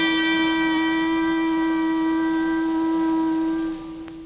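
Cartoon score music: a single long note held on a wind instrument, fading away near the end.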